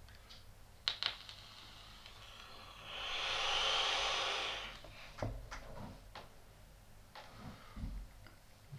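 Long inhale through a sub-ohm rebuildable dripping atomizer (CLT V3 RDA) fired at 50 watts on a 0.15-ohm coil: a steady airy hiss for about two seconds, starting around three seconds in, as air rushes through its wide-open airflow slots. A couple of short clicks come about a second in, and a few fainter ones after the draw.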